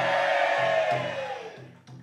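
A female pansori singer holding one long sung note that sags slightly in pitch and fades away near the end, with a single sharp knock just before the end.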